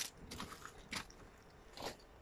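Four short crunching noises at uneven intervals.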